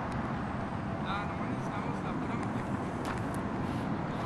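Steady urban road-traffic noise from a busy street, with the faint voices of people talking close by.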